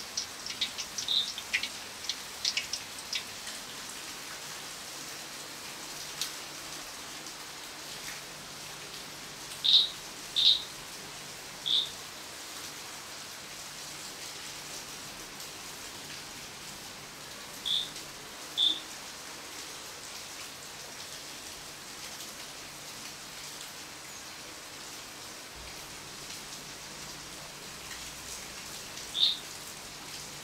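Steady rain falling, as an even hiss, with a few light clicks in the first seconds. A bird gives short, high chirps: a pair about ten seconds in, one soon after, another pair near the middle, and one near the end.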